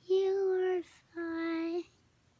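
A young boy singing a made-up lullaby: two long held notes, the second a little lower than the first, with a short breath between.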